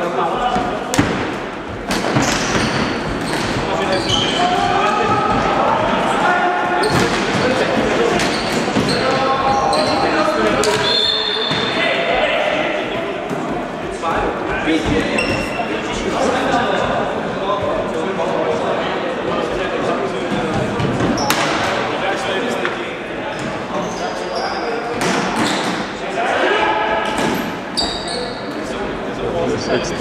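Floorball game in a reverberant sports hall: players shouting to each other amid frequent sharp clacks of sticks and the plastic ball, with brief high squeaks of shoes on the wooden floor.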